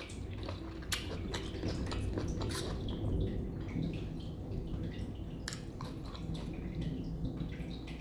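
A steady low rumble that swells at the start and keeps going for a long while; the eater takes it for a distant airplane, or possibly thunder. Occasional wet mouth clicks of chewing sit on top of it.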